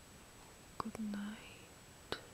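A woman's quiet mouth sounds: a few soft clicks a little under a second in, then a brief low murmured hum lasting about a third of a second.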